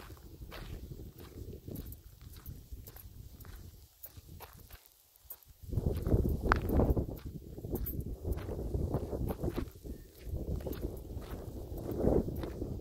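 Footsteps of a person walking along a trail, a step about every half second. About halfway through, a louder low rumble joins the steps.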